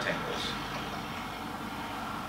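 Steady room tone of a fan-like hum and hiss, with the last syllable of a spoken word at the very start.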